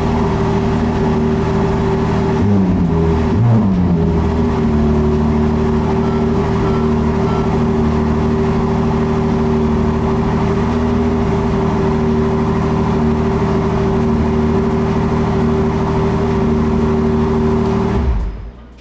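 Ferrari 296 GTS's 3.0-litre twin-turbo V6 idling steadily, with a short dip in pitch about three seconds in.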